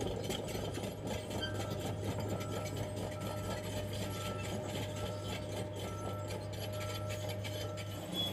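John Deere crawler loader reversing, its backup alarm beeping faintly about once a second over a steady low drone from the machine.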